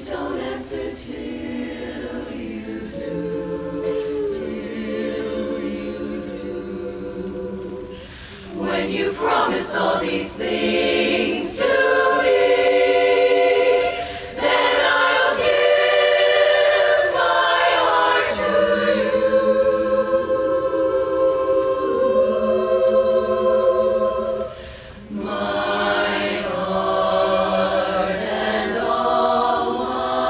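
Women's barbershop chorus singing a cappella in close harmony, holding long chords. The sound grows louder about eight seconds in, with short breaks between phrases.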